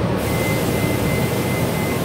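Cabin noise inside a Gillig BRT clean diesel bus: a steady diesel engine and road rumble. A hiss joins just after the start, and a thin, steady high whine runs through the rest.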